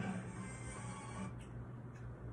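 Faint music from a television broadcast, heard quietly in the room from the TV's speaker.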